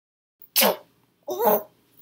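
Two short wordless vocal exclamations from a cartoon character's voice, the first about half a second in and the second about a second later.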